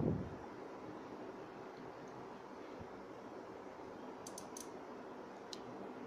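Normally-closed solenoid water valve clicking as power is connected: a few sharp clicks a little over four seconds in and one more near the end, as its piston pulls in and opens the valve. A faint steady hiss lies under it.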